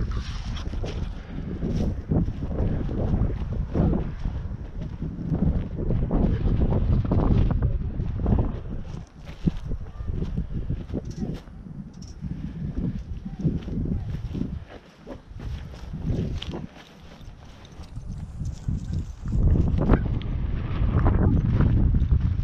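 Gusty wind buffeting the microphone: a heavy low rumble that surges and falls, easing off for a few seconds about three-quarters of the way through.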